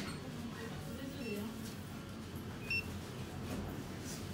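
Background voices in a supermarket, with a short high electronic beep from a self-checkout kiosk about three quarters of the way in.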